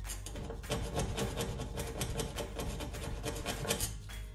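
A knife blade scraping around the base of a stainless-steel gas hob burner in quick, repeated strokes, metal rasping on metal as stuck-on grime is worked loose.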